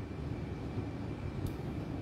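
Steady low background rumble in a room, with one faint click about one and a half seconds in.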